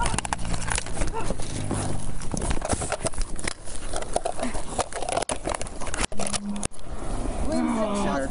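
Physical struggle heard at close range: clothing rubbing and knocking against the microphone, scuffling thumps, and strained, shouting voices.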